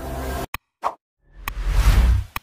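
Animated subscribe-button sound effects: a whoosh that cuts off with a mouse click about half a second in, a short pop, then a second click and a whoosh that swells near the end.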